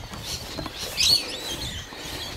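A wild bird gives one short, wavering, high-pitched chirping call about a second in, over faint low background noise.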